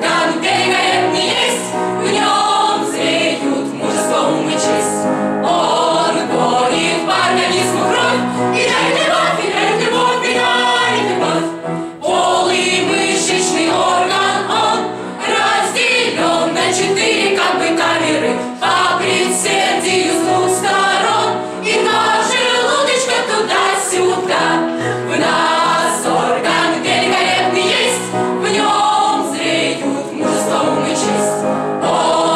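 Mixed choir of women's and men's voices singing together, loud and continuous, with a brief break between phrases about twelve seconds in.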